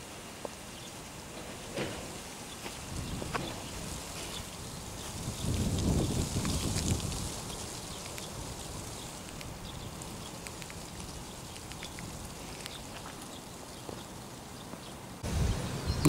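Faint, steady outdoor background noise with scattered small ticks, and a louder low rush lasting about two seconds around five seconds in.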